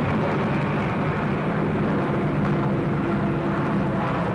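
Steady drone of piston aircraft engines, even in level throughout.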